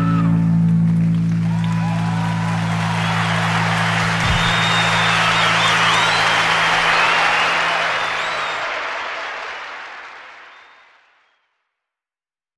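Live rock recording ending: the band's final chord rings out under audience applause and cheering. The chord stops about three-quarters of the way through, and the applause fades out to silence near the end.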